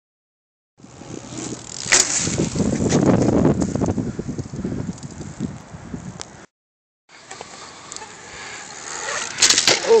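A BMX bike being ridden on a hard court, its tyres and frame heard over outdoor noise, with a sharp click about two seconds in and a few clicks near the end. The sound drops out briefly past the middle.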